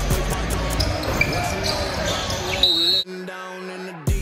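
Basketball bouncing on a gym floor amid players' voices and a couple of short high squeaks, with background music underneath. About three seconds in, the game sound cuts off suddenly, leaving only quieter music.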